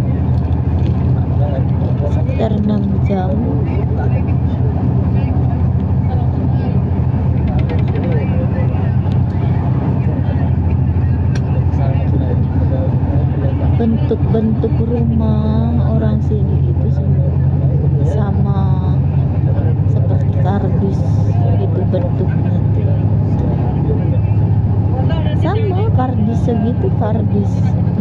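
Steady low drone inside a moving road vehicle's cabin, engine and road noise at cruising speed, with indistinct voices talking now and then over it.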